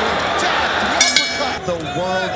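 Arena crowd noise with two sharp smacks about a second in, a fifth of a second apart: kickboxing strikes landing.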